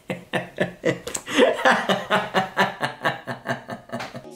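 A man laughing hard: a long, unbroken run of short ha-ha pulses, about five a second.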